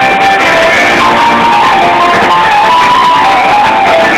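Rock band playing live in an arena, recorded through a cell phone's microphone, with a melody line rising and falling through the middle.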